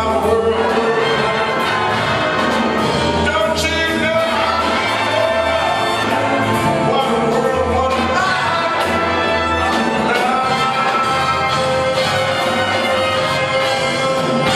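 A jazz big band playing live: brass and saxophone sections over a rhythm section of drums, double bass, guitar and piano, with drum strokes running through.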